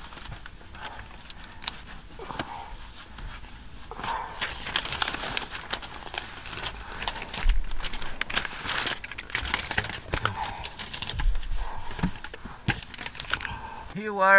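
Tape being pulled off the roll and pressed around the joint of a foil-covered duct pipe: irregular crinkling and crackling of the foil with small tearing sounds, busier from about four seconds in.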